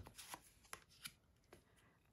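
Tarot cards being handled: faint, light clicks and flicks as a card is drawn from the deck and laid onto the spread, about five small ticks over the first second and a half.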